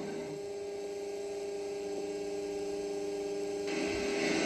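Steady electrical hum with a faint hiss under it, in a gap in the programme's sound with no music or speech.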